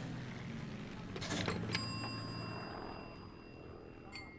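An old-style telephone handset is set down on its cradle, with a click and a brief metallic ding from the phone's bell about two seconds in. Under it runs a steady low engine-like drone that fades out.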